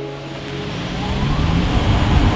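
Toyota Prius pulling away: a motor note rises steadily in pitch over rushing road and wind noise that grows louder. In the first half second the last held chord of the song fades out beneath it.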